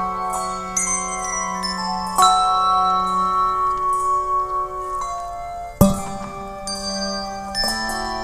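Handbell choir playing a slow piece: chords of handbells are struck and left to ring on and overlap, new chords coming every second or two, the loudest about six seconds in.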